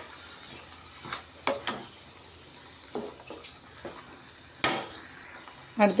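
Steel spoon stirring and scraping a thick masala gravy in a stainless steel kadai, over a steady low sizzle of the frying paste. Several sharp clinks of the spoon against the pan, the loudest just before five seconds in.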